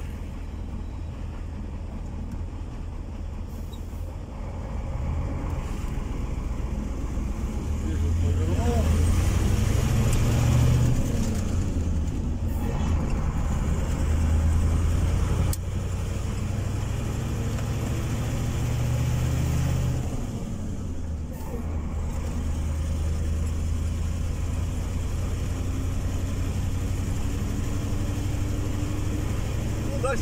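Car cabin noise while driving on a highway: a steady low rumble of engine and tyres. It grows louder for several seconds in the middle, then settles back.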